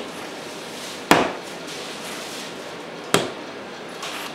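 A mass of bread dough slapped down hard onto a floured work table twice, about two seconds apart, in slap-and-fold kneading. This is the last stage of kneading, which works air into the dough.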